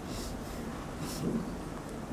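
Steady low rumble of room noise, with two short hissy rustles in the first second and a brief low swell just after one second.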